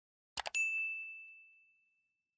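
Sound effect of a subscribe-button animation: two quick mouse clicks, then a single bell-like ding that rings out and fades over about a second and a half, the notification bell being switched on.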